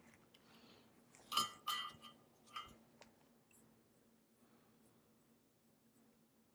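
A few light metallic clinks: two close together about a second and a half in, and a fainter one a second later, as a soldering iron is set back in its metal stand.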